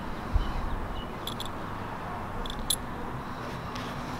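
Faint clicks from the push button of a skydiving rig's automatic activation device as it is pressed to switch it on, in two pairs about a second apart, over a steady background hum. There is a low bump about a third of a second in.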